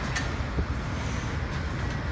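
Steady low rumble of road traffic, with a faint tick near the start.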